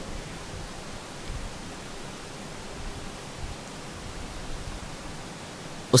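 Steady, even hiss of the recording's background noise, with no other sound.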